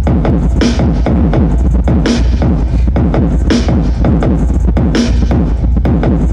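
Trap-style electronic music played loud through a Logitech Z906 subwoofer: a steady deep bass line and busy melody under a sharp hit that comes about every second and a half.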